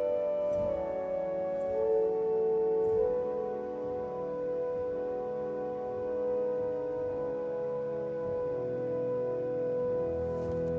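Aeolian-Skinner pipe organ playing a slow melody on the pedal division's four-foot flute, which sounds clearly above soft sustained chords on the manuals. The melody changes note a few times in the first three seconds and then holds a long note, and lower notes come in near the end.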